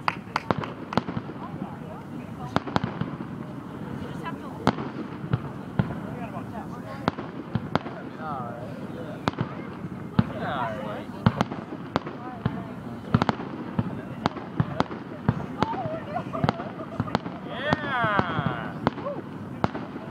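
Aerial firework shells bursting in a display, an irregular run of sharp bangs and crackles with a few louder reports.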